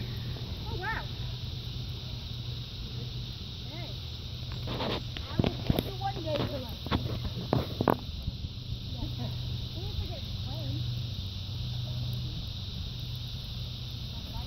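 Cardboard and wood burning in a fire pit, with a handful of sharp crackles in the middle, over a steady high chorus of insects and faint voices.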